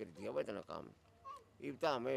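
People talking in short, broken phrases, with a quieter pause in the middle and a brief faint high-pitched sound a little over a second in.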